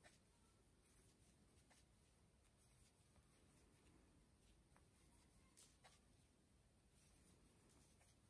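Near silence: room tone, with a few faint ticks as a crochet hook works through yarn.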